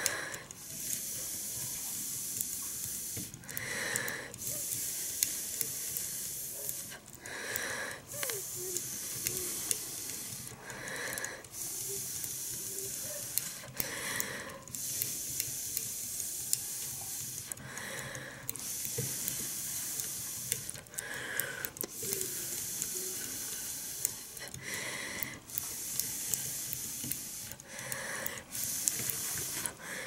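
A person blowing steadily on freshly inked fly-tying dubbing to dry the marker ink: long exhaled blows of about three seconds each, broken by quick inhalations, repeated about eight times.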